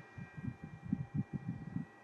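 Irregular low bumps and rumbles of camera handling noise as the camera is moved and a phone is picked up off the carpet, over a faint steady high electrical whine.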